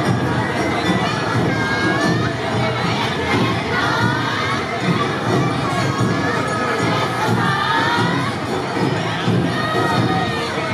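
Awa odori dancers shouting high-pitched calls together amid crowd noise, many overlapping voices rising and falling in pitch.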